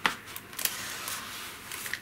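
Soft rustling of card-stock paper being unfolded and handled, with a single sharp click at the start.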